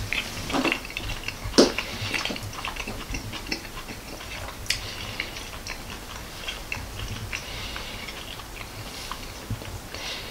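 A person chewing a mouthful of soft baked turnip au gratin, with many small mouth clicks and two sharper clicks about one and a half and five seconds in.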